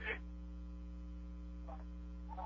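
Low, steady electrical mains hum with its overtones on the radio broadcast feed.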